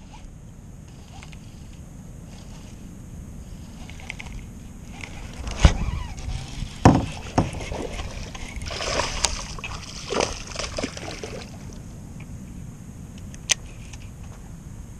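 Paddling a Lifetime Tamarack Angler kayak: water splashing and sloshing off the paddle blade, with a few sharp knocks of the paddle against the plastic hull, the loudest a little past the middle, and a single click near the end.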